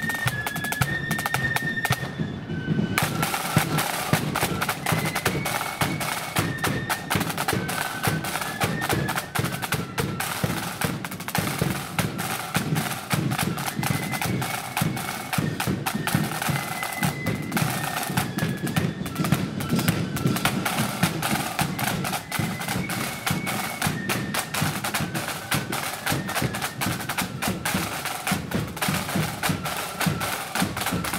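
Marching flute band playing a march: rapid side-drum rolls and beats under a high flute melody of held, stepping notes. The drums break off briefly about two seconds in, then the tune goes on.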